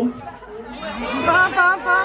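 A person's voice over crowd chatter, the voice rising in pitch in the second half.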